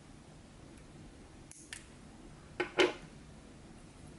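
Nail-style clippers snipping monofilament: a faint click or two about a second and a half in, then two sharp snaps close together near the three-second mark.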